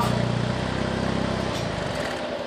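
Saturn Sky's 2.4-litre Ecotec inline-four idling steadily through the stock exhaust, then switched off about one and a half seconds in, the idle cutting out.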